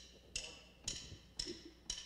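A drummer's count-in before a worship song: sharp wooden clicks, evenly spaced at about two a second, setting the tempo for the band.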